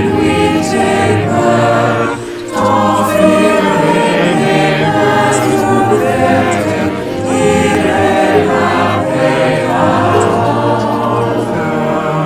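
A mixed choir of about seventy voices, assembled from separately recorded home videos, singing a hymn in sustained phrases over an instrumental accompaniment track. There is a brief dip between phrases about two seconds in.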